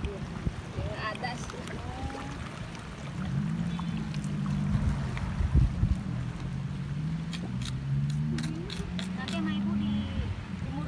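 A low engine drone comes in about three seconds in, its pitch holding and then stepping up and down. A few sharp clicks follow near the end.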